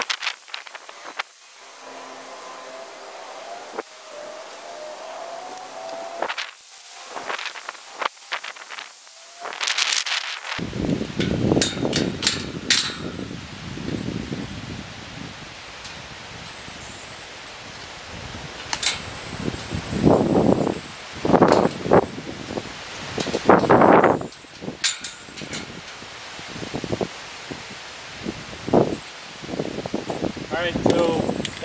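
Aerosol spray-paint can hissing in short bursts as it sprays a metal gate. In the second half, wind noise on the microphone and scattered sharp metallic clicks take over.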